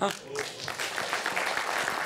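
A voice in the audience lets out a sudden "ah", and the billiards crowd at once breaks into applause that builds within the first second and keeps going.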